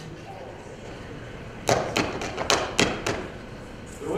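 A quick series of about seven knocks, as on a door, spread over a second and a half in a large hall.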